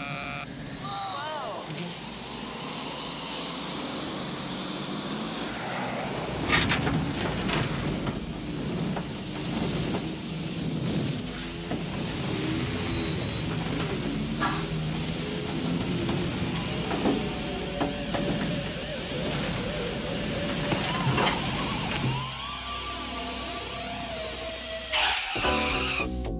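Sci-fi 'hyperspace' sound effect: a high whine that climbs over the first six seconds and then wavers on, over the rushing noise of the speeding car and music. About a second before the end it gives way to upbeat music.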